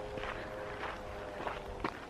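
Footsteps on a gravel dirt road.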